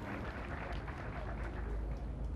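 Steady outdoor ambience on an open archery field: an even low rumble with a light hiss above it, with no distinct event standing out.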